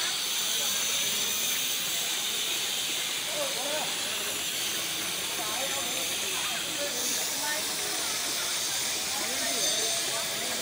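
Water pouring in a thin stream from a carved stone spout and splashing into a wet stone channel, a steady hiss.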